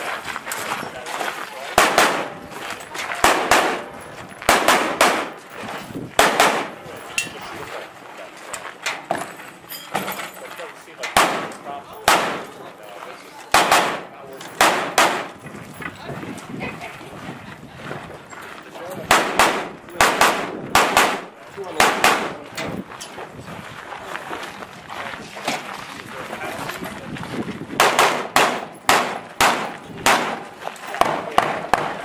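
Firearm shots from a competitor running a 3-gun stage. They come in quick pairs and short strings, with pauses of a few seconds between groups as he moves from one shooting position to the next.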